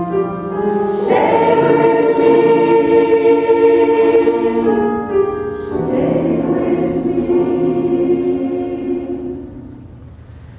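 Women's choir singing sustained chords, with a new phrase coming in about a second in and another a little past the middle, the sound dying away near the end.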